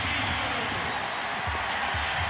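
Football stadium crowd cheering in a steady roar, heard through a TV broadcast: the home crowd cheering a fumble recovery by their team.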